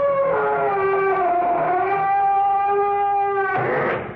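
Closing theme music of an old-time radio drama: several sustained, wavering horn- or reed-like tones that slide in pitch, ending in a short loud swell that then fades away.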